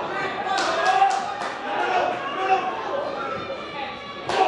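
Footballers' shouts and calls echoing around a near-empty stadium, with several sharp thuds of the ball being kicked about half a second to a second and a half in.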